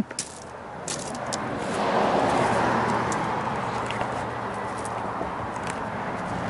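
A vehicle passing on the road: a rush of tyre and engine noise swells to a peak about two seconds in, then slowly fades. A few light clicks come in the first second and a half.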